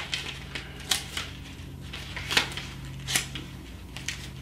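Bible pages being turned to find a verse: a handful of short, crisp paper rustles, spaced irregularly, over a low steady hum.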